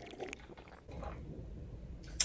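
A person drinking from a glass, with mouth and swallowing sounds and a few faint clicks early on, then a low rumble from about a second in.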